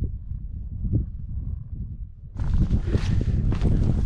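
Wind buffeting the microphone: a low rumble that grows louder and fuller a little past halfway.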